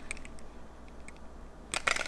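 Small sample packaging handled in the fingers: faint scattered clicks and rustles, then a quick cluster of sharper, louder clicks near the end.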